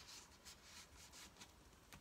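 Near silence, with faint rustling of paper as the pages of a handmade paper journal are handled.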